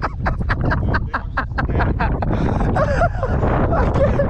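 Wind buffeting the microphone with a steady rumble, over a run of short, quick breathy laughs through the first two seconds and a brief voice sound near the end.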